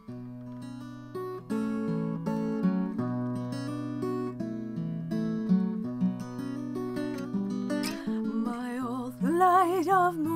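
Acoustic guitar playing a slow passage of picked notes and chords. Near the end a woman's voice comes in with long wordless notes that waver in pitch.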